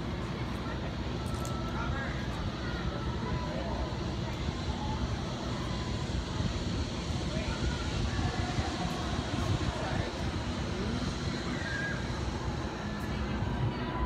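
Faint, distant voices over a steady low outdoor rumble.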